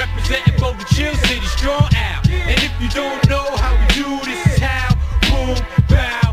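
Late-1990s hip hop track: rap vocals over a beat with a heavy bass line and drum hits.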